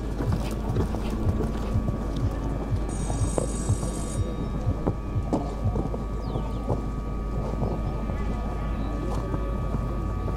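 Hoofbeats of a horse cantering on a sand arena: a steady rhythm of dull thuds, about three a second, with wind noise on the microphone.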